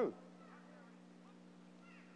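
The falling tail of a man's spoken word right at the start, then near silence with a faint steady low hum from the recording.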